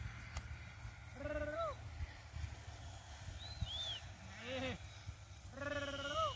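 Sheep in a grazing flock bleating: three separate bleats, each rising then falling in pitch, the last near the end. A short, high two-note chirp sounds between them, over a low rumble.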